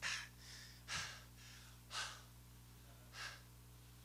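A man breathing hard into a handheld microphone: four or five short, faint breaths about a second apart, over a steady low electrical hum.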